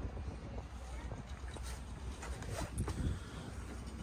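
Quiet outdoor background with a low wind rumble on the microphone and a few faint knocks.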